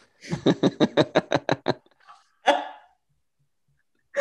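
Laughter: a quick, even run of about ten short laughs over a second and a half, then one more breathy laugh about two and a half seconds in.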